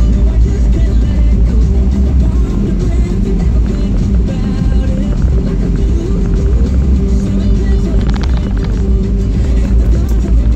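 Music playing on the car radio inside the cabin of a moving car, over the steady low rumble of the engine and tyres on the road.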